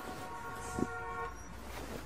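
A steady, horn-like tone sounds for a little over a second and then stops, with a short soft thump in the middle, over a low background hum.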